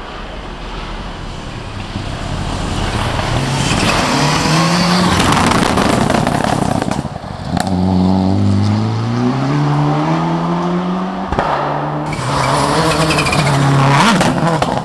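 Rally car at speed on a gravel forest stage, its engine getting louder as it approaches. The engine note climbs through the gears, with shifts about halfway through and again a few seconds later, and it is close by near the end.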